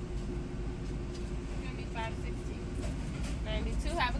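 Car idling, heard from inside the cabin: a steady low rumble with a faint steady hum. A faint voice speaks briefly about two seconds in and again near the end.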